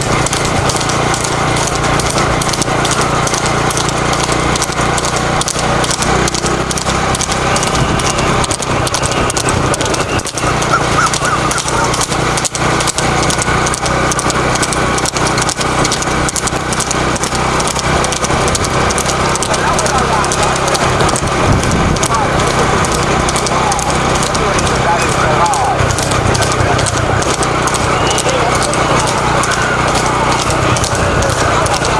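Hooves of a horse pulling a light two-wheeled rekla racing cart, clattering fast on the paved road, with voices going on over them throughout.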